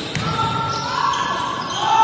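A basketball being dribbled on a wooden gym floor during live play, with voices in the background.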